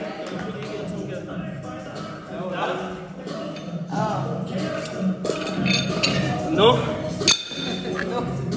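A few sharp metallic clinks of gym equipment, the loudest near the end, over background voices and music.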